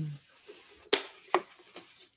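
A hummed 'mm' trails off, then two sharp clicks about half a second apart, the first the louder, with a few fainter ticks around them.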